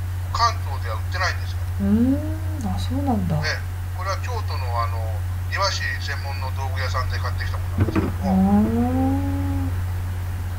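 A voice speaking in short, scattered phrases over a steady low hum, with a brief knock about eight seconds in.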